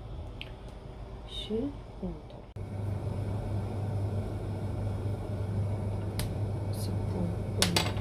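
A steady low mechanical hum with an even hiss starts abruptly about two and a half seconds in, with a few light clicks near the end as a non-stick frying pan is handled.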